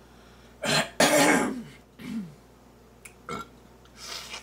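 A woman's loud, breathy vocal exhalations: a quick sharp breath, then a longer falling 'haah', and a shorter falling one about a second later, a reaction to sour grapefruit.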